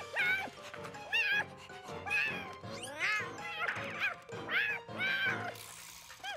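Cartoon cat character making a quick run of short meows and yowls, each rising then falling in pitch, over background music.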